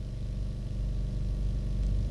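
A steady low drone made of several held tones over a deep rumble, slowly swelling louder.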